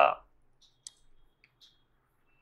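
A spoken word ends at the start. Then come a few faint, sparse clicks on a computer, the sharpest a little under a second in.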